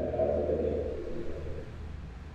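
A low, steady hum with a faint, drawn-out voice fading away in the first second or so.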